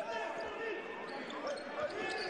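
Basketball being dribbled on a hardwood court, with faint voices in the gym around it.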